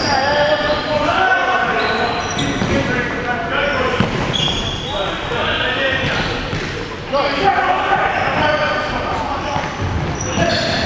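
Futsal ball bouncing and being struck on a wooden sports-hall floor, with players calling out, all echoing in the large hall.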